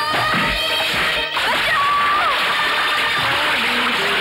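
Dramatic film background music over fight sound effects: a stick swishing and striking in the first second, then, from about a second and a half in, loud splashing water from a person thrashing in a river.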